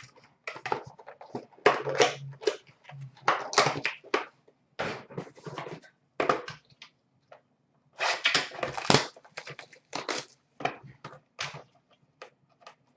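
Crinkling and rustling of a trading-card pack's wrapper and its small cardboard box being handled and torn open, in irregular crackly bursts with short pauses between.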